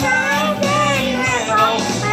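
A young girl singing along to a pop backing track; her voice glides and breaks between notes over held bass notes.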